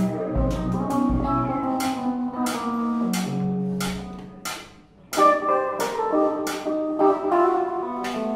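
Free-improvised live music from a trio: Nord keyboard notes, electric guitar and a drum kit with frequent cymbal strikes. Past the middle the playing thins almost to nothing, then the band comes back in suddenly with a loud hit.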